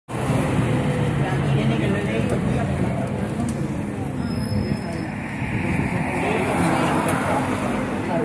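Road traffic on a multi-lane street, with a vehicle driving past that swells and fades in the second half.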